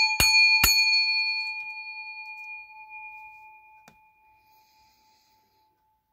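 Small brass singing bowl struck with a mallet a few times in quick succession in the first second, then left to ring out, its bright tone fading away over about four seconds.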